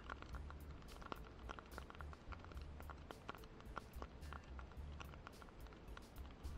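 Faint wind rumble on the microphone, with scattered small irregular clicks and ticks.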